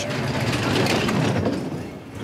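Two-man bobsleigh running at speed down the ice track, its steel runners rumbling on the ice as it passes the trackside microphones. The rumble swells to its loudest about a second in and fades near the end.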